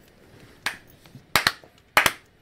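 A few slow, uneven hand claps, sharp and short, some coming in quick pairs, starting just over half a second in.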